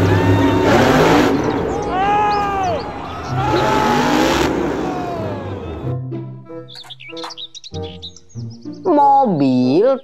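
Monster truck engine revving loudly, its pitch rising and falling several times, for about the first six seconds. It then cuts off into a children's background song.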